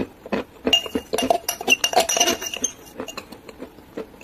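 A couple of short crunches of chewed chalk at the start, then, about a second in, a quick run of clinks and rattles against a drinking glass with a ringing note, lasting about two seconds.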